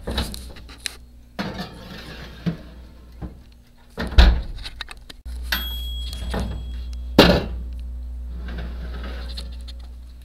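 A metal baking tray scraping and clattering against an oven rack, and an oven door clunking, with the loudest knocks about four and seven seconds in. A steady low hum runs underneath from about five seconds in.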